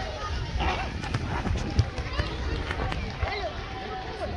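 Many children's voices chattering and calling out at once, none clearly intelligible, with a low bump about two seconds in.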